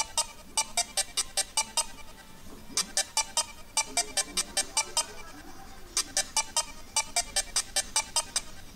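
Commodore 64-style chiptune playing from the VICE emulator through a small laptop speaker: quick runs of short staccato beeps, about six a second, in phrases with short pauses between them.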